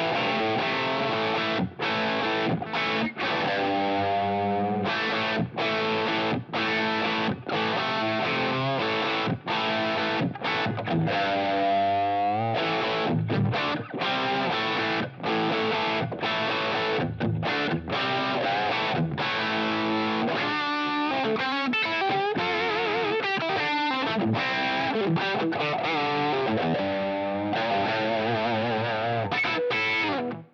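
Electric guitar on a humbucker pickup through the Line 6 Helix's Dumble-modelled amp, pushed by the Stupor OD overdrive with every knob at five. It plays a crunchy classic-rock riff with short stops between phrases, then moves into bent notes and wavering vibrato in the second half.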